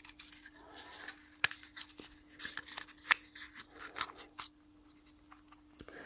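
Light clicks and scraping of a small laser-cut wooden incense house being handled and its thin wooden and metal parts fitted together by hand, with a few sharper clicks spread through.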